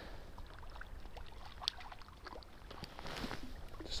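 Faint river water with light splashing as a hooked small trout is brought in to the bank, with scattered small clicks and rustles, one a little louder about two seconds in.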